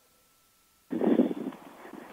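About a second in, a telephone line carries a second of choppy, muffled noise from the far end, with no clear words. It sounds like a call that is breaking up.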